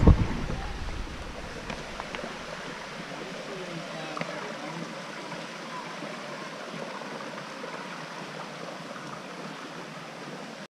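Steady rush of a shallow, rocky creek flowing over stones. Wind buffeting the microphone fades out in the first half-second.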